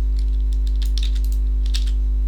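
Computer keyboard keystrokes, an irregular run of quick clicks, over a steady low mains hum.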